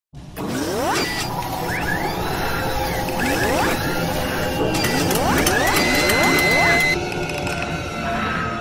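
Mechanical sound effects for an animated logo intro: machine whirs and ratchet-like clicking with several rising sweeps, then a held high tone that cuts off about seven seconds in.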